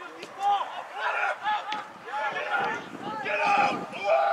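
Players' voices calling out across a soccer pitch during play: a string of short, distant shouts, some overlapping.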